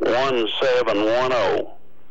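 Speech only: a voice talks for about a second and a half, then stops, over a faint steady hum.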